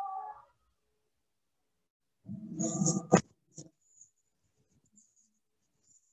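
A brief pitched cry at the start, then about two seconds in a short burst of laughter that ends in a sharp click, heard over a video-call line.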